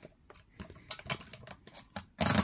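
Faint paper rustling and a few small, light clicks as a sheet of card is slid into and lined up in a Zutter hole-punching machine.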